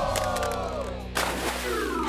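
Edited-in comedy sound effects over background music: a sliding tone falls in pitch through the first second, then a short whoosh comes about a second in.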